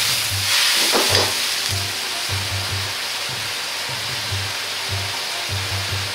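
Pork and mushrooms sizzling in a hot wok as a ladle stirs them, louder in the first second or so, then a steady sizzle. Background music with low bass notes plays underneath.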